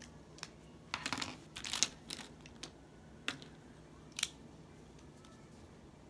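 Faint rustling of paper and a few sharp clicks and taps from stationery being handled on a wooden table, bunched in the first half, then two single clicks a second apart.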